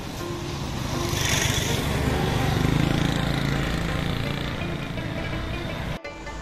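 A motor vehicle passes by on the road, its sound swelling from about a second in, peaking near the middle and fading toward the end. Background music plays throughout.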